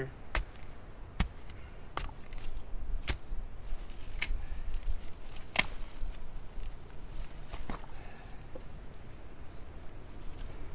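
Pointed wooden digging stick jabbed into stony soil, a series of sharp knocks as it strikes rocks, about one a second in the first half and fewer after, with scraping of dirt and stones between strikes.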